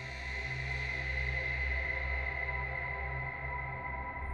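Tense background score: a sustained electronic drone with a low throbbing bass underneath, swelling slightly about a second in.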